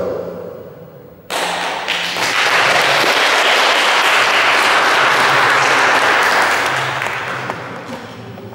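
Audience applauding in a hall: the clapping starts abruptly about a second in, holds steady and dies away near the end.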